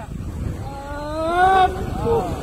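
A person's voice: one long rising call lasting about a second, in the second half, over a steady low rumble.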